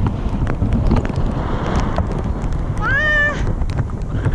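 Wind buffeting the microphone during paraglider flight, a steady rushing noise. About three seconds in, a person gives one short high-pitched squeal that rises and is then held for about half a second.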